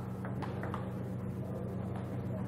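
Steady low electrical hum in the old broadcast audio. About half a second in, a couple of faint sharp ticks come through, the celluloid ball of a table tennis rally striking a paddle or the table.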